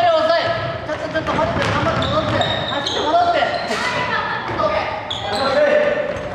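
Basketball bouncing several times on a wooden gym floor during play, echoing in a large hall, with players calling out.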